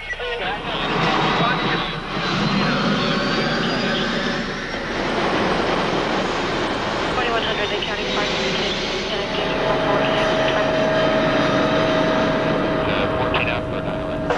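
Helicopter turbine engine and main rotor running, with a high whine rising in pitch over the first few seconds and settling into a steady hum later on.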